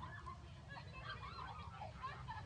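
Macaques giving a string of short, high calls that bend up and down in pitch, over a low steady rumble.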